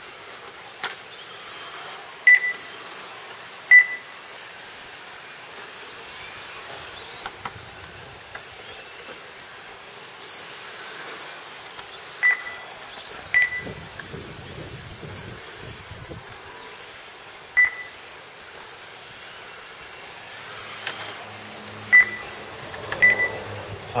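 Electric 1/10-scale radio-controlled touring cars lapping a track, their motors giving a high whine that rises and falls as they accelerate and brake. Short, sharp beeps from the lap-timing system sound every few seconds, the loudest thing heard.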